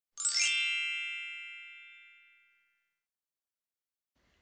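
A single bright chime, struck once and ringing out with many high tones, fading away over about two seconds.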